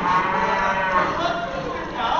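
One long, drawn-out moo, lasting about a second and a half and sinking slightly in pitch as it fades.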